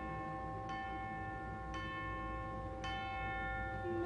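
Orchestral tubular bells striking three slow, evenly spaced strokes about a second apart, each note ringing on, like a clock tolling midnight.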